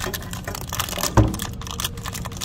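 Torn plastic sealant packets crinkling as fingers handle them and the putty inside a metal pellet trap, as a dense run of small clicks. There is one duller knock a little past halfway.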